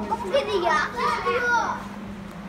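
Children's voices talking and calling out over one another, with a steady low hum underneath.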